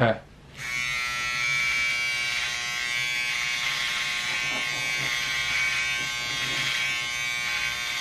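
Electric beard trimmer with a number three guard switched on about half a second in, then running with a steady buzz as it is worked through a thick beard.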